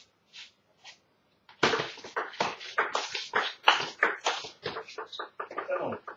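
A small audience clapping after a table tennis point is won, starting about a second and a half in as a quick, irregular patter of individual claps. Before that come a couple of soft ticks.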